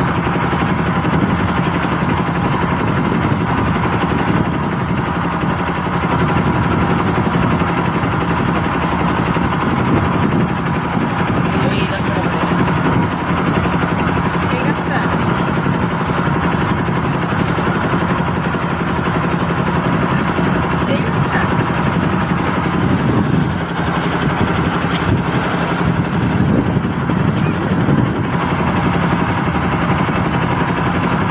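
A motor boat's engine running steadily under way, a constant drone with a low steady tone, with a few brief clicks scattered through.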